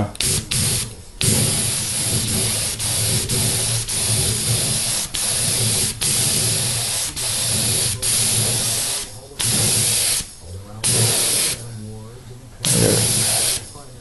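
A compressed-air spray gun spraying thinned nitrocellulose lacquer in a string of trigger-pulled bursts of hiss, each a second or so long with brief breaks, pausing longer toward the end before one more burst. An air compressor hums steadily underneath.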